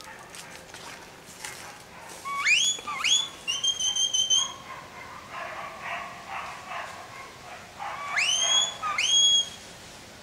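Herding whistle commands to a working border collie: two short whistles that sweep up in pitch, then a held steady note a few seconds in, and two more rising whistles near the end.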